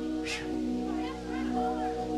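A woman singing with a live band and backing singers; a held chord sounds throughout while her voice comes and goes with wavering, sliding notes.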